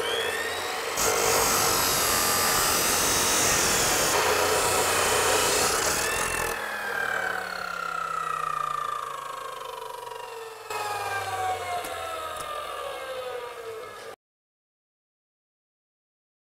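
Abrasive chop saw starting with a rising whine, then its stainless-steel cut-off wheel grinding through 3/8-16 stainless threaded rod for about five seconds. After the cut the motor winds down with a long falling whine, and the sound stops dead about two seconds before the end.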